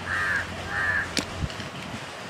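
A crow cawing twice in quick succession, followed by a sharp click.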